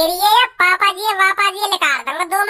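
A high-pitched, sped-up cartoon character voice talking quickly, with a short break about half a second in.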